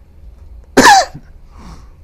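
A man's single short cough, about a second in.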